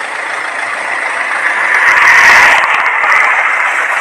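A road vehicle passing close by: a rushing noise that builds to its loudest about two seconds in and then eases off.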